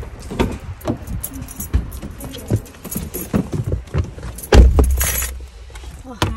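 Car keys jangling and clicking while a car door is opened and someone gets into the car, with a string of small knocks and handling sounds. There is a loud low thump about four and a half seconds in.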